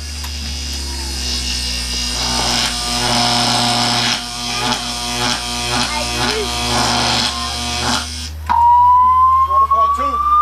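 Electronic sci-fi machine sound effect for a prop teleporter being charged up: a loud electric buzzing hum with hiss for about eight seconds. It cuts off abruptly and a single steadily rising whine takes over.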